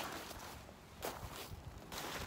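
Footsteps, about one a second.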